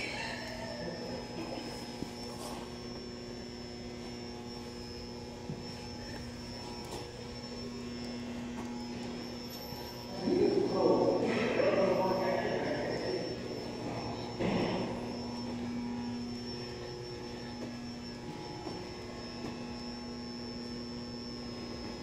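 Steady hum of an indoor hall with a thin high whine over it. Indistinct voices rise briefly about halfway through.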